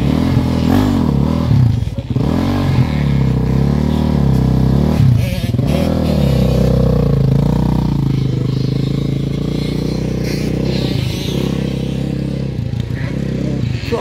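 Engine of a bored-out Suzuki RM motocross sidecar outfit being revved up and down repeatedly, then pulling away and running steadily as it draws off into the distance, growing fainter near the end.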